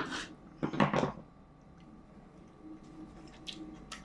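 A knife cutting a piece from a ripe tomato and the fruit being handled and tasted: two short scrapes and knocks in the first second, then quiet with a few faint clicks near the end over a faint steady hum.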